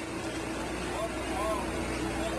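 Steady engine hum of heavy runway recovery vehicles, with a steady droning tone underneath and faint voices about a second in.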